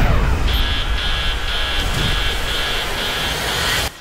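Film-trailer sound effects: a loud rushing roar of wind and aircraft-like noise, with an alarm beeping about twice a second over it from about half a second in. Both cut off abruptly near the end.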